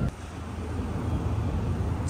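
Steady low rumble of a moving vehicle, engine and road noise, with no clear rises or falls.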